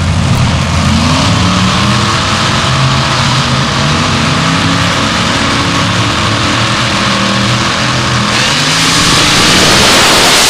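Drag-racing dragster engine idling steadily at the starting line, then going to full throttle about eight seconds in as the car launches, the sound swelling into a loud roar.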